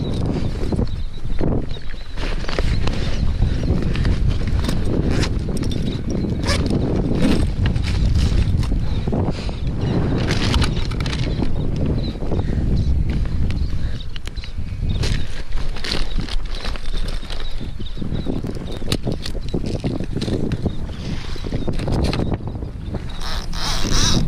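Steady wind and water rumble on an outdoor camera microphone, with frequent short knocks and clicks from hands handling a fish and gear on a plastic kayak deck.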